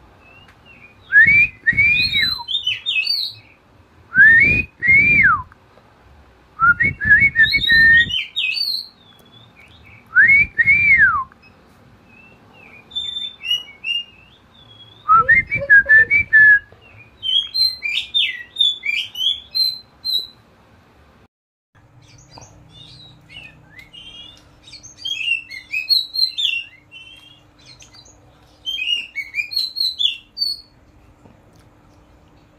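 Oriental magpie-robin (kacer) singing in the loud, open 'ngeplong' style: clear whistles that rise and fall, mostly in pairs, every few seconds, then quicker high chirps and twitters. In the last third the song is softer over a faint steady hum.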